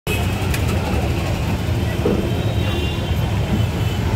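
Motor vehicle engines idling in stopped street traffic, a steady low rumble.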